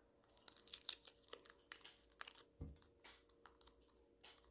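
Wrapper of a small chewy candy stick being torn open and crinkled by hand: faint, irregular crackles, busiest about half a second to a second in.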